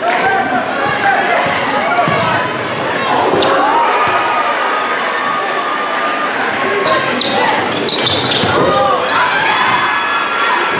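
A basketball being dribbled on a hardwood gym floor, with sneakers squeaking and a crowd talking, echoing in a large gym.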